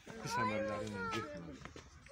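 A woman wailing in grief: a long, drawn-out crying voice whose pitch bends up and down through the first second or so, fading into weaker sobbing.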